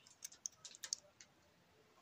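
Faint crackling of a plastic chips (crisp) packet: a quick run of small sharp crackles that stops about a second in.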